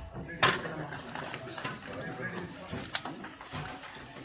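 Murmur of voices in a small room with light clatter of plates and serving utensils: one sharp, loud clink about half a second in, then a few fainter clicks.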